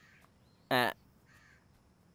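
A single short voiced call, about a quarter second long, a little before the middle; the rest is near silence.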